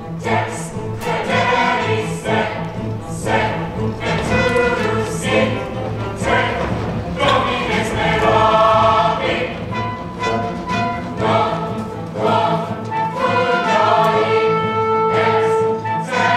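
A musical-theatre chorus singing with orchestra accompaniment over a steady low pulse, the voices settling into long held notes near the end.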